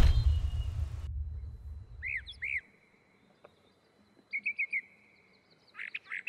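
Music dies away in the first second. Then a bird chirps in short arched notes: two about two seconds in, a quick run of four about halfway through, and a few more near the end, over a faint steady high tone.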